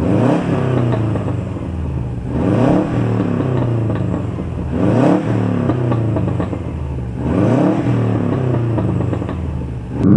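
Subaru Impreza GT's turbocharged flat-four engine being revved while parked: four quick blips from idle, about two and a half seconds apart, each rising and falling back to a steady idle.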